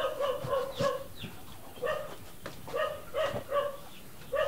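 High-pitched whimpering: runs of short cries, each held at one pitch, several in the first second and another cluster in the second half.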